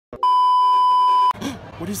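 Television colour-bar test tone: a single loud, steady beep about a second long that cuts off suddenly, followed by a man starting to speak.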